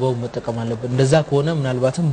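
Only speech: a man talking steadily, with no pauses.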